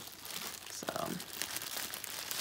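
Clear plastic bag crinkling and rustling irregularly as it is handled and turned in the hands, with a doll inside.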